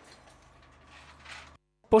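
Very faint background noise with a steady low hum and a brief soft swell a little past the middle, then a moment of dead silence just before speech resumes.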